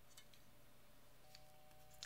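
Near silence: room tone with a faint steady hum and a couple of faint ticks.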